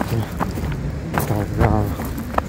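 A short stretch of a person's voice in the second half, over a steady low background rumble with a few light handling clicks.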